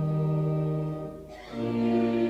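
Pipe organ playing a hymn in steady held chords. The chord breaks off about a second and a quarter in, and after a short gap the next phrase begins.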